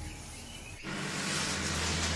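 A quiet tail of soundtrack music, then about a second in a sudden cut to steady outdoor forest ambience, a high even hiss of natural background noise.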